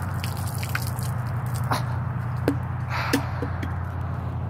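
Water poured from a plastic bottle, splashing onto a person, as a steady wash with a few sharp drip-like clicks in the second half.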